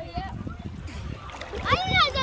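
Sea water sloshing and splashing against a phone held at the surface as a wave rolls through. A child's voice rings out loudly near the end.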